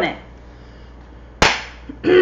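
A single sharp hand clap a little past halfway, fading away quickly.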